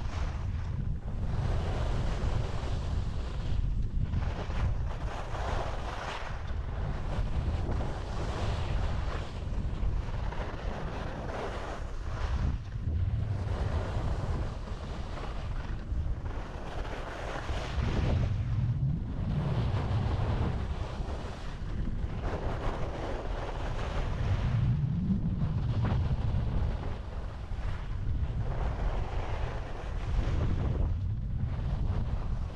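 Wind rushing over an action camera's microphone while skiing downhill, with the hiss and scrape of skis on packed snow, rising and dipping every second or two as the skier turns.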